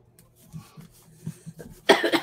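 A person coughs once near the end, loud and brief, after a stretch of faint rustling and light tapping.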